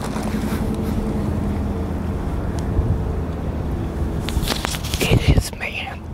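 Steady low engine drone from a motor running nearby. About four and a half seconds in come a few sharp knocks and rustles from the clip-on microphone being handled.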